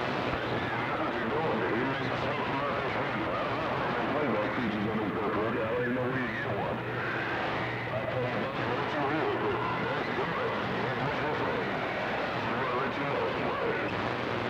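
CB radio receiving a weak long-distance transmission on channel 6: steady static and hiss, with a faint, garbled voice buried in the noise.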